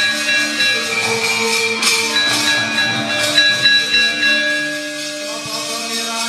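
Javanese gamelan playing: metal keyed instruments and gongs ring out in held, overlapping pitches, with two sharp high strikes about two and three seconds in.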